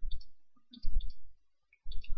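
Computer mouse button clicking three times, about once a second, each a short sharp click.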